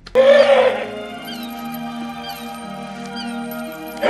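Film soundtrack music. A short, loud wailing cry, its pitch rising and falling, opens it. A steady chord then holds, with small high falling chirps about once a second.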